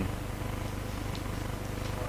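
Steady low hum with room tone in a pause between speech, with a couple of faint light ticks.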